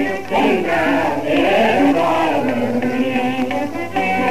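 A voice singing a long, drawn-out, wavering melodic line of a Telugu stage-drama verse (padyam), over steady held instrumental notes.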